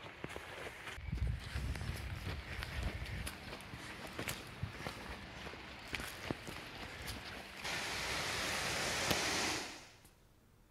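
Footsteps on a dirt and leaf-litter trail, irregular crunches and scuffs, with wind rumbling on the microphone a second or two in. Near the end a steady rushing hiss comes in loudly and then cuts off suddenly.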